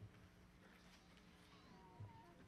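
Near silence: room tone, with a faint, brief gliding tone near the end.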